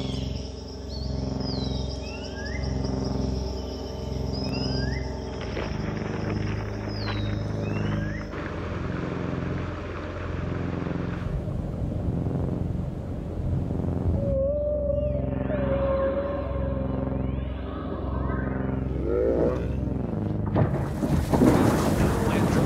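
A low sustained ambient music drone under layered nature sounds. Bird calls come in the first several seconds, then a rush of water, then a long whale-like call about fourteen seconds in. A loud crash of collapsing glacier ice near the end is the loudest part.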